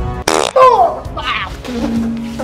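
Background music with a short buzzing, fart-like comic sound effect near the start, followed by a falling glide in pitch, then a held low steady note in the second half.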